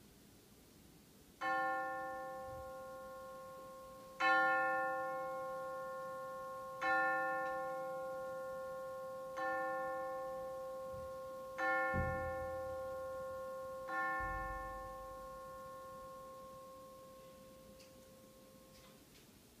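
A bell-like chime struck six times on the same note, about every two and a half seconds, each strike ringing on and slowly fading. Two dull low bumps come with the last two strikes.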